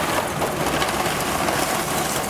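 Poor-quality lump charcoal, mostly dust and small fragments, being poured from a paper sack onto a grill bed: a steady, dense rattle of small pieces sliding and spilling.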